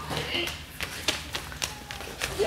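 Footsteps on a hard stage floor: a string of sharp taps, about three a second.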